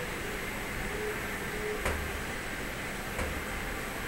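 Steady outdoor city background hum, with two faint clicks about two and three seconds in.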